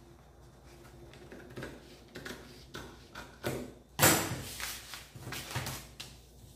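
Scissors cutting through stiff brown pattern paper to trim off the excess along the edge: a run of crisp snips with the paper crackling, the loudest cut about four seconds in.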